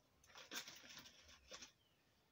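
Faint rustling and crumbling of hands working soil and crumbled rotten wood into a pot around a fern's roots, dying away near the end.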